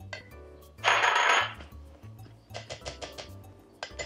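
Ice cubes poured into a glass blender jar: one loud clatter lasting under a second about a second in, then a few light clicks as they settle. Soft background music underneath.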